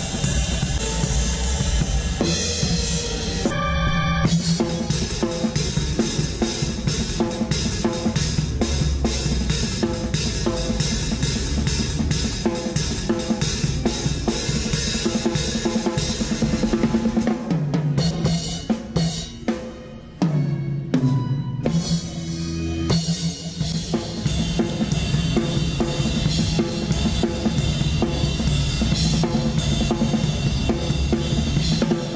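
A drum kit played live on stage: fast, dense strikes on bass drum and snare with cymbals, broken by a few short stops a little past the middle.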